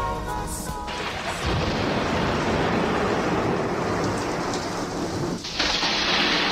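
Recorded rain and thunder sound effect on a soul record, taking over as the last held notes of the music die away about a second in; near the end it briefly dips, then the rain comes back brighter and louder.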